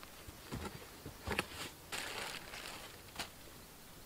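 Faint handling sounds of someone scooping and sprinkling fish bone meal along a garden row: a soft knock about a second and a half in, a short rustle just after, and a faint click near the end.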